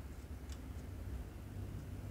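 Potato being grated on a round stainless-steel plate grater: faint scraping ticks as it rubs across the perforations, with one sharper click about half a second in, over a steady low hum.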